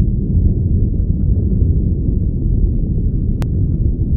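Wind buffeting a phone's microphone: a loud, steady low rumble with no tone in it, and a single faint click about three and a half seconds in.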